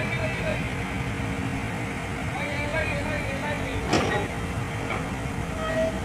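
Heavy vehicle engine running steadily, with faint voices behind it and a single sharp knock about four seconds in.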